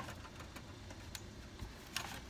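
Faint low wind rumble on a phone microphone, with a few light clicks.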